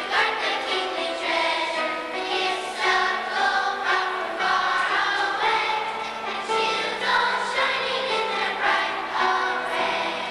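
Children's choir singing, with notes held and changing pitch every second or so.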